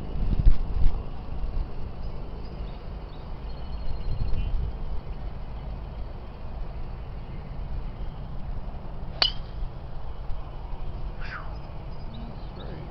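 A golf club striking a teed ball: one sharp, short crack about nine seconds in, over a steady low rumble of wind on the microphone that is loudest near the start.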